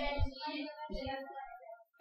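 A faint, higher-pitched child's voice, singing or chanting briefly and fading out near the end.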